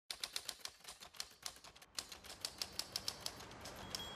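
Typewriter keystrokes as a sound effect: a quick, irregular run of sharp key clacks, about six a second, typing out a title.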